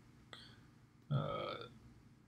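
A man's short, low vocal sound, not a word, a little over a second in, lasting about half a second, over faint room tone.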